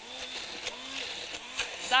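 Handheld immersion blender running steadily in a plastic jug, blending a thick pesto.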